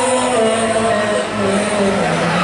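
Amplified live band music: long held notes that step down slowly in pitch, an upper line and a lower one moving together.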